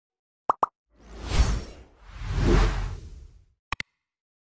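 Sound effects of an animated logo intro: two quick pops, then two long swelling whooshes with a deep rumble underneath, and two short clicks near the end.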